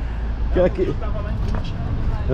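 Steady low street-traffic rumble, with a few words spoken briefly about half a second in.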